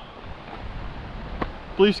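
Wind rushing over the microphone: a steady rush with a low buffeting rumble, and a faint click a little before the end.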